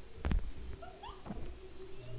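Faint animal calls in the background: one short, louder call about a third of a second in, then a few brief rising calls.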